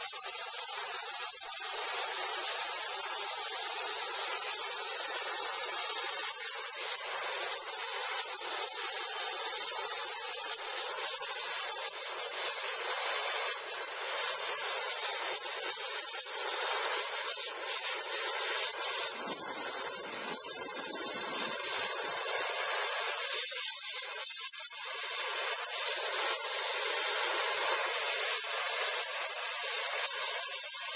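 A gas torch's flame hissing steadily, a high-pitched, even rush.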